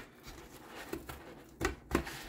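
Handling noise of an airsoft AK magazine being worked into a nylon magazine pouch: faint rustling and scraping of fabric and plastic, with a couple of short, louder scuffs near the end.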